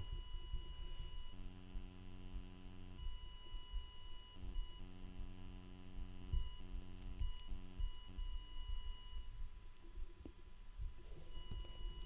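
A faint, low buzzing hum that switches on and off in several stretches of one to two seconds, over a faint steady high-pitched whine.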